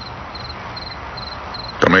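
Cricket chirping evenly, a short high chirp a little more than twice a second, over a steady hiss.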